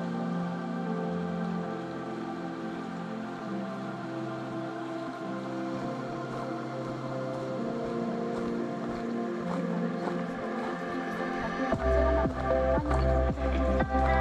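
Background music: soft, sustained chords. Near the end a steady beat with bass comes in, about two beats a second.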